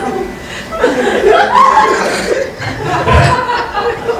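Comedy-club audience laughing and chuckling, swelling about a second in.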